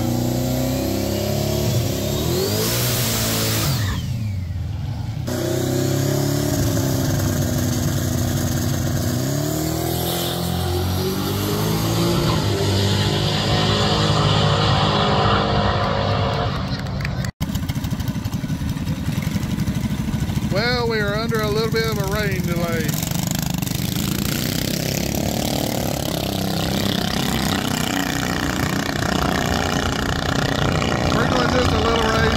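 Fourth-generation Chevrolet Camaro drag car's engine idling at the start line and revving, then running at full throttle as it pulls away down the drag strip. The sound cuts off sharply partway through, and race-track engine noise carries on afterwards.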